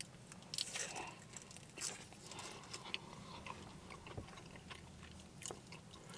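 A person biting into and chewing a foil-wrapped burrito, heard as faint chewing with scattered small mouth clicks.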